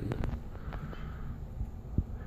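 Handling noise: a few light clicks and knocks over a low rumble as a shotgun microphone and its plastic packaging are handled close to a phone's microphone.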